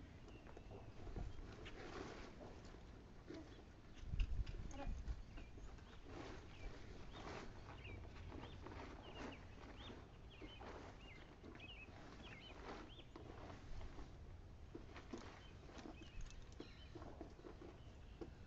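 Plastic tarp rustling and crinkling in short bursts as it is drawn over a yearling colt's head and back, with a louder low rumble about four seconds in and faint bird chirps throughout.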